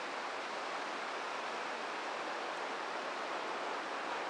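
The McKenzie River's white-water rapids rushing, a steady, even wash of water noise.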